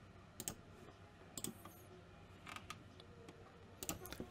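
A handful of faint, scattered clicks of a computer mouse, spaced unevenly over a few seconds.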